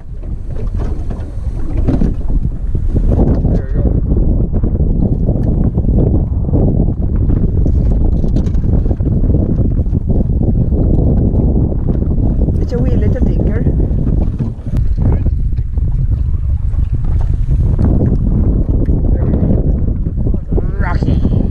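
Wind buffeting the camera microphone on open water: a loud, steady, low rumble that runs on without a break.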